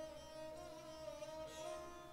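A dilruba bowed softly, holding one long steady note.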